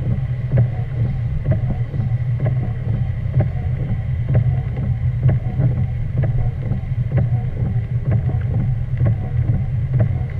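Steady low rumble of a car's engine and tyres on a wet road, heard from inside the cabin, with many light, irregular ticks of raindrops striking the windshield.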